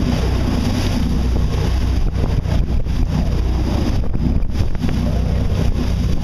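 Wind buffeting the microphone over the rush of water breaking along the hull of a boat under way, a loud, steady low rumble throughout.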